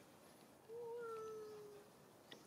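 A young macaque gives a single coo call about a second long, starting about two-thirds of a second in. It holds one pitch and slides slightly lower before it stops.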